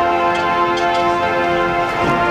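A sustained chord of steady, unchanging tones with a light ticking over it, like an electronic pad with a clock-like tick, played as a marching band's pre-show soundscape.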